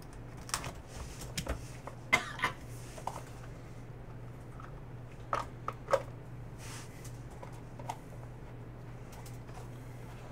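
Hands opening a cardboard box of trading cards and sliding the cards out: scattered light clicks and scrapes, a few sharper snaps around two and six seconds in, over a steady low hum.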